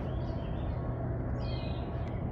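Small birds chirping faintly, with a short run of chirps about one and a half seconds in, over a steady low rumble.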